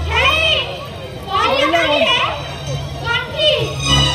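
High-pitched voices shouting and speaking in short, rising-and-falling phrases over crowd noise. The low beat of the music drops out until the very end.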